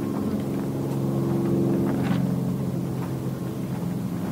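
A steady low engine hum with an even, pitched drone, swelling slightly in the middle and easing off again.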